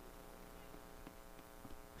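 Near silence with a faint, steady electrical hum on the broadcast audio and a few faint ticks.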